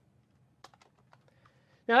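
Faint typing on a computer keyboard: a quick run of light keystroke clicks starting about half a second in.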